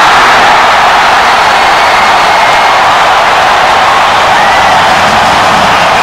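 Large stadium crowd cheering a touchdown, a loud, steady wall of noise.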